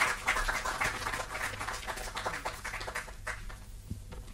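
Audience applauding, a dense patter of claps that thins out and fades near the end.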